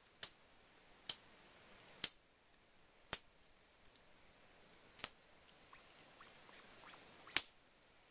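Muscovy duck's bill snapping or pecking close by, six sharp clicks spaced one to two seconds apart, the last the loudest.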